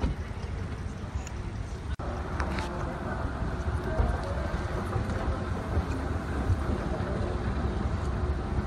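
Wind rumbling on the microphone, a steady low rumble, with faint voices in the background; the sound breaks off briefly about two seconds in.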